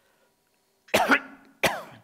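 A man coughs twice into his hand close to a microphone: a longer cough about a second in, then a shorter one just after.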